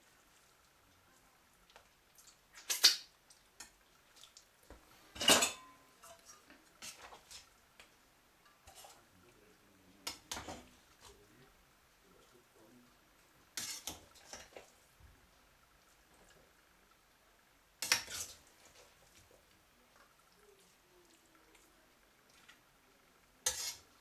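Metal slotted skimmer knocking and scraping against a stainless steel pot while cooked rice is stirred and scooped out. About six sharp clanks come a few seconds apart, with faint scraping between them.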